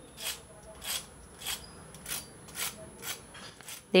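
A metal fork scraping across the crisp fried coating of deep-fried potato rolls in a wire strainer: about seven short, crunchy rasps, roughly two a second, the sign of a well-fried, crunchy crust.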